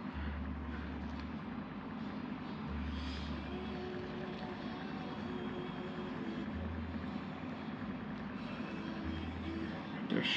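Steady background noise with a low hum that comes and goes several times, each spell lasting about a second.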